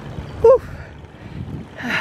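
A cyclist's short voiced gasp for breath about half a second in, out of breath from pedalling, over steady wind and riding noise. Near the end she begins to speak.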